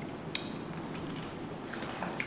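Quiet eating sounds over low room hum: a sharp click about a third of a second in, then a few softer clicks near the end.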